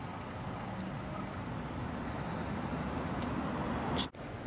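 Steady outdoor background noise: a low, even rumble and hiss, like distant traffic, growing slightly louder toward the end.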